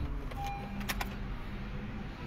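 Car keys jingling in a 2015 Honda City's ignition as the key is turned to switch the ignition on: a short beep, then two sharp clicks about a second in, over a steady low hum.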